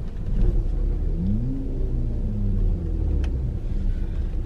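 Car engine heard from inside the cabin, a steady low rumble whose pitch rises about a second in, then slowly falls as the car accelerates and eases off.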